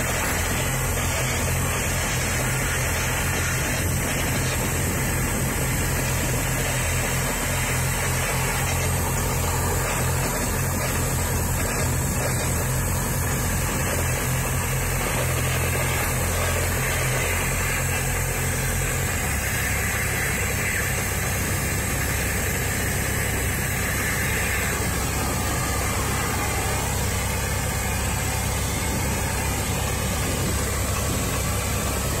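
Cutting torch hissing steadily as it burns through a steel excavator track, with an engine running in the background whose low hum changes about two-thirds of the way through.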